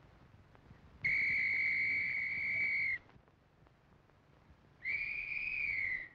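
A police whistle blown in two long, steady blasts, the second shorter and dropping slightly in pitch as it ends.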